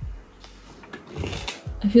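Light handling noise of things being moved around on a desk: a brief soft scuffle about a second in.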